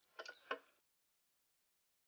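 A few faint clicks of a metal spoon against a stainless steel pot as diced carrot is scooped out, all within the first half-second.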